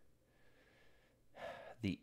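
A man takes a short, audible in-breath about a second into a pause, then starts speaking again.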